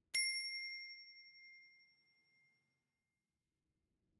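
A single bright, bell-like ding sound effect that rings and fades away over about two seconds.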